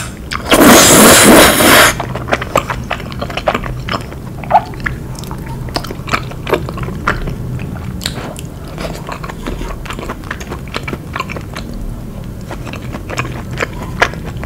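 Close-miked slurping of thick udon noodles in a creamy curry sauce: one loud slurp about half a second in, lasting over a second. It is followed by soft, wet chewing with many small mouth clicks.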